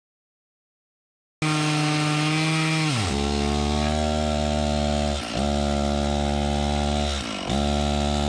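Silence, then a Stihl chainsaw starts abruptly at high revs, cutting into a concrete slab. About a second and a half later its pitch drops as the engine bogs under load, and twice more it sags briefly and picks back up. This is the chain binding in the cut, a chain that keeps locking up.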